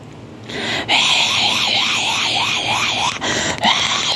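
A person's voice, a harsh, raspy cry that starts about half a second in and pulses about four times a second.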